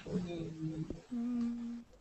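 A person humming 'mm' twice while thinking of an answer: a low, steady hum, then a second, slightly higher one.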